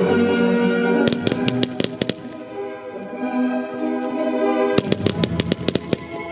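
Classical orchestral music, with fireworks going off over it. A rapid run of about eight sharp bangs comes about one to two seconds in, and another quick run of about ten near the end.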